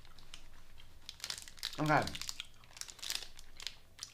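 Foil snack-bar wrapper crinkling in a hand, in scattered short crackles.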